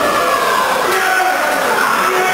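Small crowd shouting and cheering in a hall just after a wrestling slam, with many voices held and overlapping.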